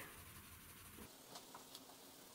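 Faint scratching of a coloured pencil shading on paper, with a few soft ticks of the lead on the page.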